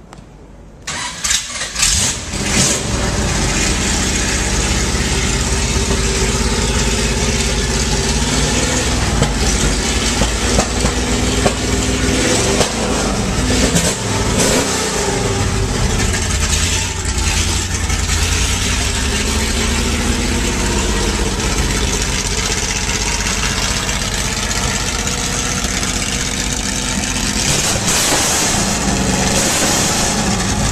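Marcos Mantis XP's Repco Type 740 V8 racing engine starting about a second in, catching with a few uneven bursts, then running steadily and loudly at idle.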